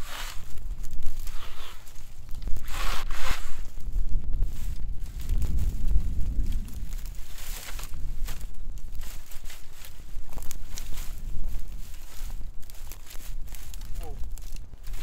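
Dry, dead vines being pulled and torn out of a small tree by hand: snapping, crackling and rustling of brittle stems in short bursts, with footsteps on dry grass and a low rumble underneath.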